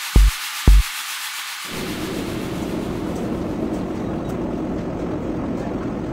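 Background electronic music: a kick drum beating about twice a second stops about a second in, and a steady rushing noise wash takes over for the rest, leading into a plucked-guitar track.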